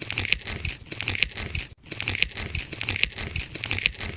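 Added crackling sound effect: a dense run of rapid clicks and crunches in two matching stretches, broken by a brief gap a little under halfway through.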